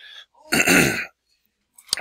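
A man coughs once to clear his throat, a single short burst of about half a second.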